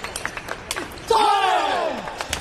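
Table tennis ball clicking sharply off bats and table during a rally, then about a second in a loud shout from a player, falling in pitch and lasting nearly a second, as the point is won.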